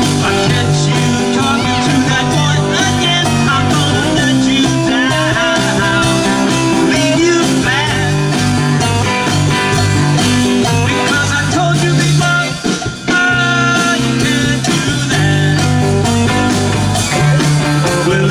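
Live rock band playing: electric guitars, bass and drums. The music dips briefly about two-thirds of the way through.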